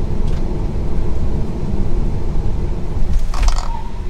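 Steady low road and tyre rumble inside the cabin of a moving Tesla Model 3 Performance.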